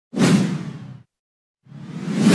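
Two whoosh sound effects from a logo animation: the first hits suddenly and fades away over about a second, and the second swells up near the end.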